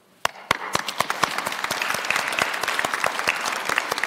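Audience applause: a few separate claps about a quarter of a second in, quickly swelling into steady, dense clapping from the whole room.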